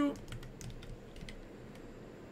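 Typing on a computer keyboard: scattered, irregular key clicks as code is entered.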